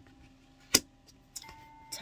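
Tarot cards being handled and drawn from a deck: one sharp click under a second in, then two lighter clicks, over faint steady background tones.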